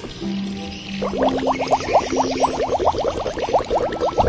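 Background music: a held low note, then from about a second in a fast run of short rising synth sweeps, about eight a second, over sustained lower notes.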